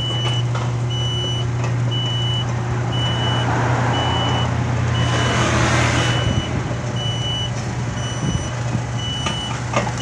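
Electric sliding gate in motion: the operator's motor hums steadily while its warning beeper sounds a short high beep about once a second. A brief rush of noise swells midway.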